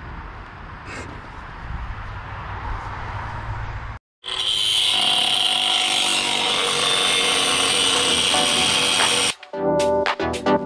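Angle grinder cutting through steel exhaust-manifold bolts: a loud, steady, high-pitched grinding noise for about five seconds after a brief cut, then music starts near the end. Before it, a few seconds of fainter outdoor background rumble with light knocks.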